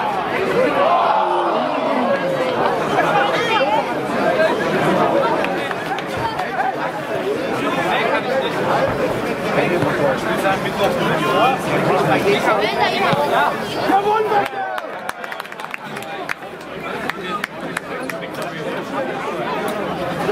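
Many voices shouting and chattering over one another: football players calling on the pitch and spectators talking, with the voices thinning out and quieter about two thirds of the way through.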